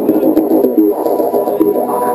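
Psytrance music in a breakdown, without kick drum or bass: a fast-moving synth line in the mid range.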